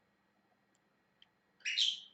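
A pet parrot gives one short, high-pitched call near the end, after a second and a half of near quiet.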